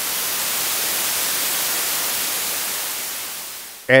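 White noise from an NPN transistor abused as a noise source (base grounded, collector floating, emitter fed 12 volts through a resistor, so the base-emitter junction breaks down), AC-coupled and amplified by an op amp. It is a steady hiss, brightest in the highs, that fades out near the end.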